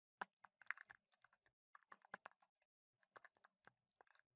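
Faint typing on a computer keyboard: quick runs of keystrokes in three short bursts with brief pauses between.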